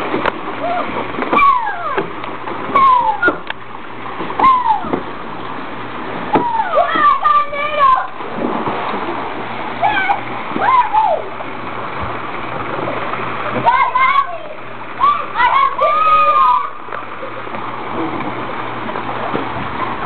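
Kids shouting and whooping again and again in high voices over steady splashing water in a swimming pool.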